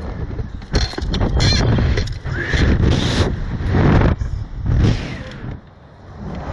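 Wind rushing over the onboard microphone of a SlingShot reverse-bungee ride's capsule as it swings, coming in repeated surges, with a rider's short cries mixed in. The rush drops away near the end.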